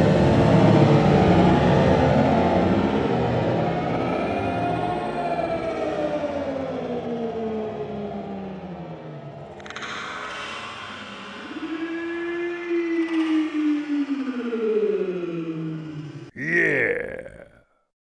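Slowed-down sound of a Thunder B airsoft grenade going off, played about ten times slower: a long rush of noise that fades over several seconds. Then voices are stretched into deep tones that slide slowly down and up.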